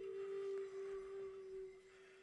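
Native American-style wooden flute holding one long, pure low note that fades near the end.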